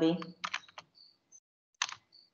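Computer keyboard typing: a few quick key clicks about half a second in, then a short louder sound near the end, heard over a video-call connection.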